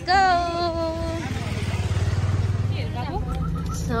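A vehicle engine idling in the street, a low steady rumble, under voices: one long drawn-out falling note in the first second, then talk near the end.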